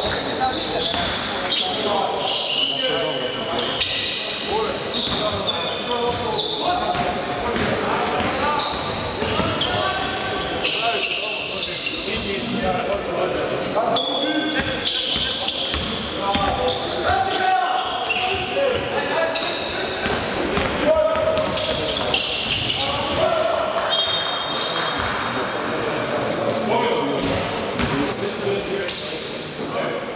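Basketball being dribbled on a hardwood court, its repeated bounces mixed with players' shouts and calls echoing around a large sports hall.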